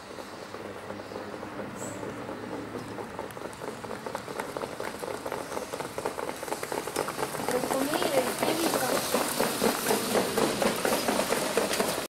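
Hoofbeats of trotting harness horses on a sand track, growing louder as the horses come closer, with voices in the background.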